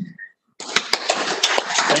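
A small group applauding, a dense patter of claps starting about half a second in.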